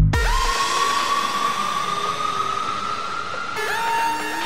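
Electronic tekno/acid track going into a breakdown: the kick drum stops right at the start, leaving a hissing synth wash with a high synth tone that slowly rises in pitch. A new, steadier synth phrase comes in near the end.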